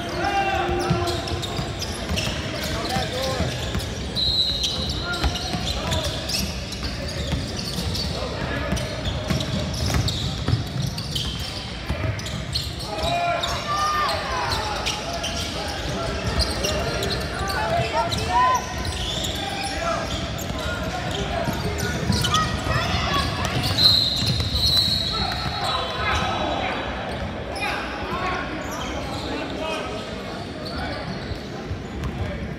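Live basketball in a gym: a ball bouncing on the hardwood floor, sneakers squeaking and players' and onlookers' voices echoing in the hall. A referee's whistle sounds twice, about four seconds in and again near the end.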